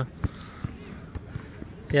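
A basketball bouncing on a hard outdoor court: a few short, sharp thuds at uneven spacing, the first the loudest.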